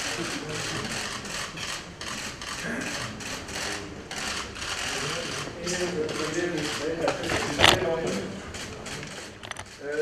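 Many camera shutters clicking in rapid, irregular bursts during a posed group photo, over a murmur of voices. One sharper, louder click stands out about three-quarters of the way through.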